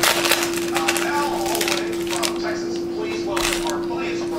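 Trading cards being handled and flipped through by hand, with many short crisp card-on-card slides and flicks, over a steady low hum.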